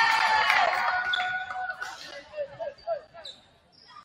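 Volleyball players' voices shouting and cheering together after a point. The shouting is loud at first and dies away about two seconds in. It is followed by a few short sneaker squeaks on the hardwood gym floor.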